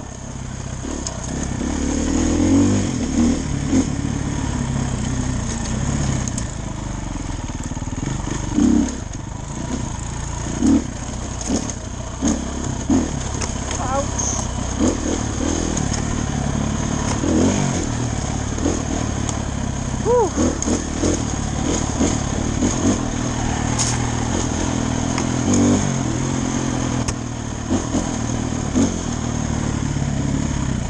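Motorcycle engine running at varying throttle, rising and falling in pitch with repeated short blips of revving as the bike works along a rough trail. Rushing wind noise comes in underneath.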